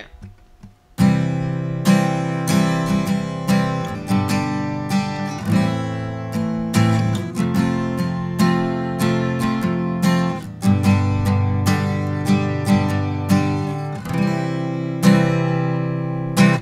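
Takamine steel-string acoustic guitar, capoed, strummed through a simple chord circle in C (C, F, G) played as plain major chords without suspensions. The strumming starts about a second in, and the chord changes every few seconds.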